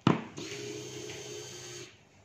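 A sharp click, then the Crossbow mini antenna tracker's servos running for about a second and a half at power-on, a steady whine that stops abruptly as the pan/tilt head settles.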